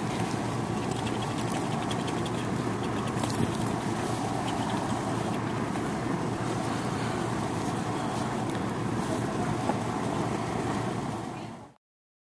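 A large fan running with a steady whir, with a few faint clicks; the sound fades out shortly before the end.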